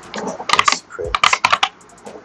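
Computer keyboard being typed on: two quick runs of keystrokes as a short word is entered.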